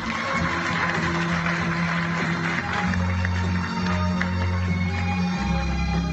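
Live music from a small band: acoustic and electric guitars playing over a backing track, with held bass notes that change about three seconds in and again near the end.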